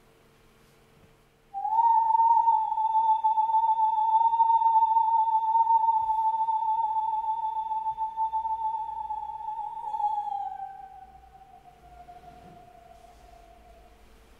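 A woman's voice singing one long, high sustained note with a vibrato made by pressing a hand on the throat instead of by electronics. The note starts about a second and a half in, holds with a slight waver, then slides down in pitch and fades over the last few seconds.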